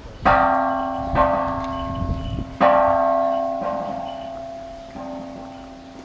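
A Buddhist temple bell struck about five times, roughly a second apart. Each strike rings on into the next, and the later strikes are softer, so the ringing fades toward the end.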